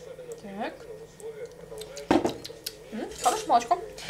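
A single sharp clink of kitchenware about two seconds in, a mug knocking against a ceramic mixing bowl, with faint voices in the background.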